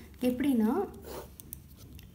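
Ballpoint pen scratching across paper as a line is drawn, with a few short scratches in the second half.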